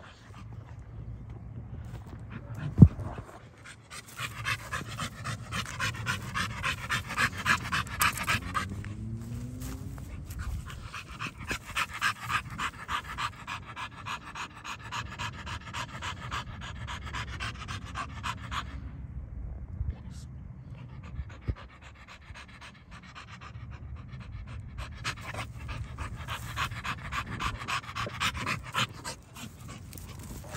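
A blue fawn pit bull-type dog panting hard, in long runs of quick, even breaths that ease off for a few seconds past the middle and then pick up again. A single sharp knock about three seconds in.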